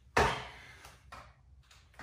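One stepping power jab in shadow-boxing: a single sudden, loud sound about a fifth of a second in as the lead foot lands on the foam mat with the punch, fading within half a second. A few faint ticks follow.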